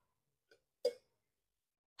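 Near silence, broken once a little under a second in by a single brief, short sound.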